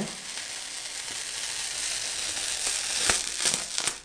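Dried gold peel-off face mask film being pulled away from the skin: a steady fine crackling, with a few sharper snaps about three seconds in.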